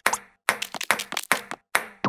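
Quick table-tennis rally: a small ball tapping back and forth off paddle and table, a dozen or so sharp clicks in quick succession.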